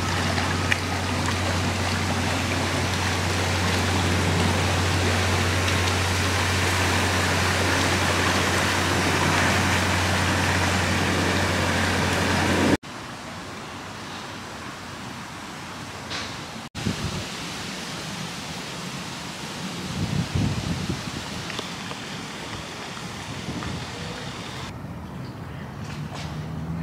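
A narrowboat's engine running with a steady low hum as the boat passes on the river, under an even hiss of wind and water. About halfway through, the sound cuts to quieter riverside ambience, with a few faint brief sounds later on.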